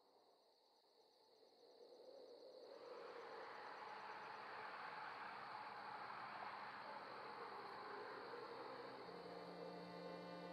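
Faint night-time insect ambience: a steady high cricket-like trill, joined about three seconds in by a soft, even rushing noise.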